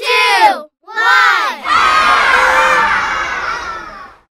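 A group of children shouting the last two numbers of a countdown, "two" and "one", about a second apart, then cheering and yelling together for about two seconds before it fades out near the end.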